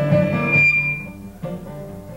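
Acoustic guitar and banjo played live: strummed chords, then a single high ringing note that fades away about a second in, leaving a quieter gap before the picking starts again.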